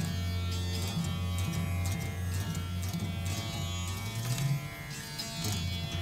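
Rudra veena playing Raga Malkauns in the Dhrupad style: deep, sustained low notes that keep ringing under a plucked stroke every second or so.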